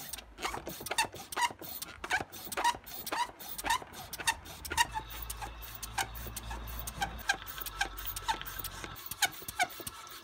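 Hand plunger oil-extractor pump being worked in rapid repeated strokes, about two to three a second, drawing excess engine oil up a hose from the dipstick tube of an overfilled engine.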